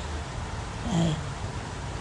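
A man says one short word about a second in; otherwise only a quiet, steady low background rumble.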